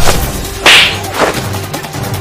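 Added fight sound effects in a staged fist fight over background music: a sharp hit at the start, a loud whip-like swish of a swung blow about two thirds of a second in, and a smaller one just after a second.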